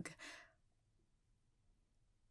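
The tail of a woman's voice trailing into a short breath in the first half second, then near silence: room tone.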